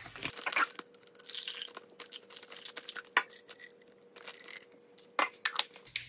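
Freshly pumped breast milk being poured into a plastic Medela bottle, amid scattered clicks and crackles of plastic containers being handled.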